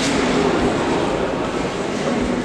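Steady, echoing sports-hall noise of indistinct voices blending together.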